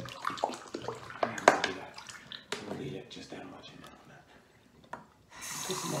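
Plastic water bottle clicking and crackling as it is handled, then a bathroom faucet is turned on about five seconds in and water runs steadily into the sink.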